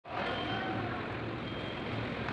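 Steady ambient noise of a busy railway station concourse: a constant low hum under a general background murmur.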